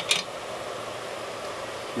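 Steady background hiss with no distinct event, and a brief soft hiss right at the start.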